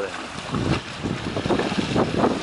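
Wind buffeting the microphone over the rush of water around a sailboat under way, rising and falling in uneven gusts.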